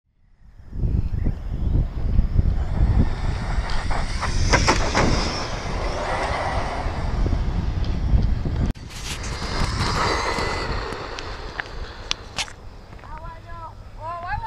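Brushless electric RC trucks running on asphalt on 3S LiPo power: a high motor whine swells and fades as a truck passes, about four seconds in and again about ten seconds in, over low wind rumble on the microphone. The sound cuts off abruptly about nine seconds in.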